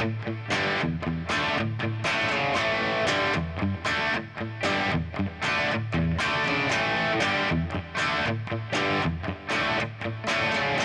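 Stratocaster-style electric guitar playing a tight hard-rock rhythm riff of power chords in straight eighth notes, the chords chopped up by muted strokes on the low strings.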